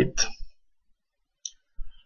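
A single short computer mouse click about one and a half seconds in, in an otherwise silent pause.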